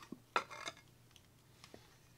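A few light metal clinks and knocks as the metal oil-reservoir housing of a small AC vacuum pump is worked loose and pulled off, the sharpest knock about a third of a second in and another just after.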